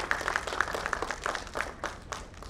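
Audience applause: many hand claps, thinning out near the end.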